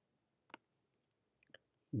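A few faint computer mouse clicks, with the clearest about half a second in and fainter ones near the one- and one-and-a-half-second marks.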